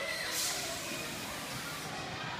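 A steady hiss starting about a third of a second in and stopping after about a second and a half, over faint voices.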